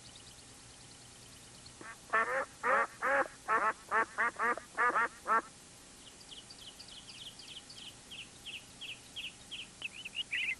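A duck quacking about ten times in quick succession, then a run of high, evenly spaced chirps, about three a second, that grows denser near the end.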